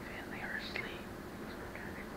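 A man speaking softly in a whisper, too quiet for words to be made out, over a faint steady low hum.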